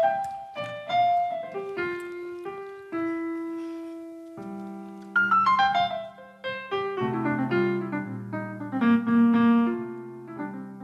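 Piano sound from a Nord Stage digital keyboard playing a slow folk melody: single notes at first, with low bass notes joining about four seconds in and fuller chords from about seven seconds.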